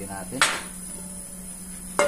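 A sharp knock of cookware on a steel gas range about half a second in, and another right at the end as the frying pan is taken by its handle, over a steady low hum.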